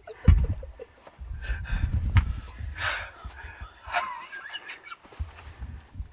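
Hard, heavy breathing close to the microphone, its breath puffs hitting the mic as deep thumps: a strong one just after the start and a long run of them about a second in. A hunter out of breath with excitement just after shooting a deer.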